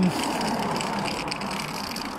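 A car driving past on the road: a steady tyre-and-engine noise that eases off slightly through the second half.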